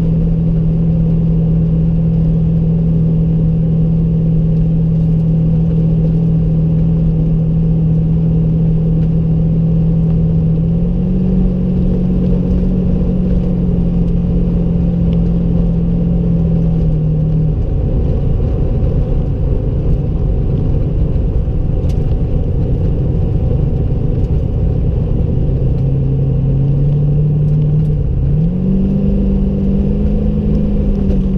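The V8 engine of a V8-swapped Mazda Miata driving on the road, heard from inside the cabin over steady road rumble. Its note steps up in pitch about ten seconds in, drops back about seven seconds later, then rises again in two steps near the end.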